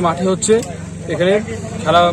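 A man speaking in Bengali, over a steady low background hum.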